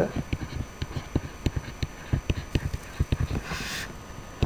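Stylus tapping and scraping on a drawing tablet while a word is handwritten: a run of short, irregular clicks, several a second, with a brief hiss near the end.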